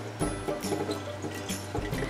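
Water pouring from a pitcher into a mason jar through a plastic strainer lid, under light background music.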